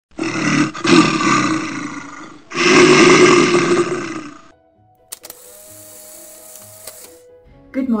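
A man in an animal-head costume gives two loud roars, each about two seconds long. A quiet stretch with a faint steady hum and a few clicks follows.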